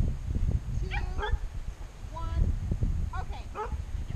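A dog giving short yips or barks in three brief clusters: about a second in, just after two seconds, and around three seconds in.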